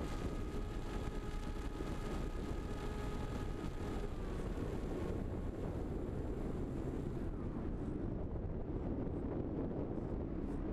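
Wind rushing over the onboard microphone of a fixed-wing RC plane in low flight, with the steady whine of its motor and propeller, which dips and fades about four to five seconds in as the throttle is cut back for landing.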